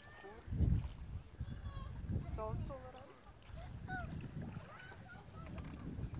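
Wind buffeting the microphone in uneven gusts, loudest about half a second in, with faint, distant voices in the background.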